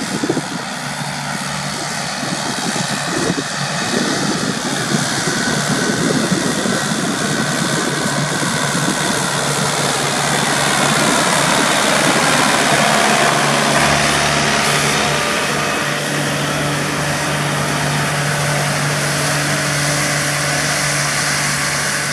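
Kubota tractor's diesel engine running steadily under load while pulling a Kubota disc mower that is cutting alfalfa and orchard grass. The engine and mower noise grow louder as the rig approaches, peak as it passes close about twelve seconds in, then ease slightly.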